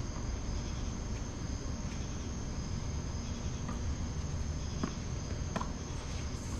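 Crickets chirping, a steady high-pitched drone over a low background rumble, with a few faint knocks about five seconds in.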